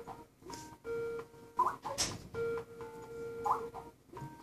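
Keys tapped on a laptop keyboard, a few sharp clicks, over a repeating set of steady background tones that sound about every second and a half.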